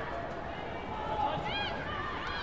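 Raised voices shouting in a reverberant sports hall over a steady background of crowd noise, with one high shout about one and a half seconds in.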